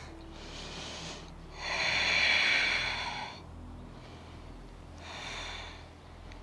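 A person breathing audibly while moving: a long, loud out-breath lasting nearly two seconds in the middle, between two fainter breaths, one near the start and one near the end.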